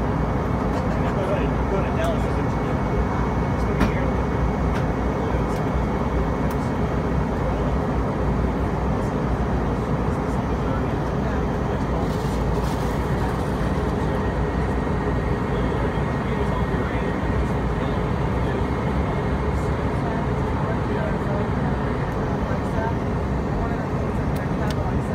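Airliner cabin noise on the descent: the jet engines and rushing airflow running steadily at an even level, with a few faint clicks.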